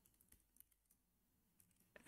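Near silence with a few faint keystrokes on a computer keyboard, soft scattered clicks as a command is typed.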